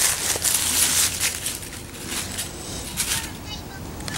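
Dry fallen leaves rustling and crunching in irregular bursts as a dog noses through them.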